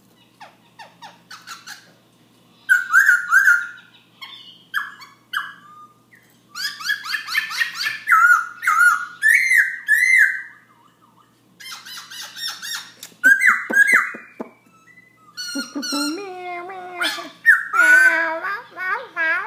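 Black-throated laughingthrush singing loud, rapid runs of whistled, up-and-down phrases, broken by short pauses of a second or so between bouts.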